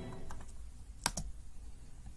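Clicks from working a computer to stop a video: a few faint clicks, then two sharp clicks in quick succession about a second in.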